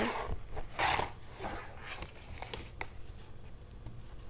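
A cardboard toy box being opened and a plush cactus toy pulled out: two bursts of rustling and scraping in the first second, then softer handling rustles and a few small clicks.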